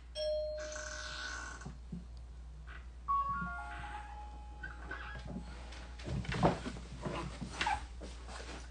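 A few electronic chime tones, each held for one to two seconds, at different pitches. About six seconds in come several short, irregular, louder sounds.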